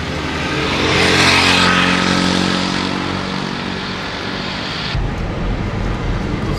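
Car driving on a highway: engine and road noise with wind, swelling about a second in and easing off. Near the end it changes abruptly to a lower, steadier cabin rumble.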